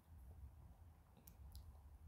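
Near silence: a low steady room hum with a couple of faint short clicks a little past the middle.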